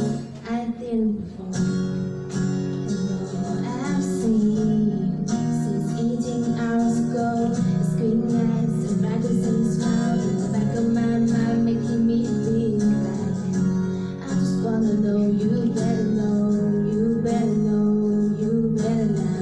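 A woman singing a slow pop ballad into a microphone over a strummed acoustic guitar accompaniment, amplified in a hall.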